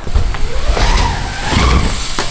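BMX bike tyres rolling on a wooden skatepark ramp: a loud, low rumble as the rider drops in and rides up the ramp, swelling at the start and again shortly before the end.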